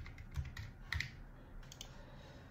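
Computer keyboard typing: a handful of faint, separate keystrokes.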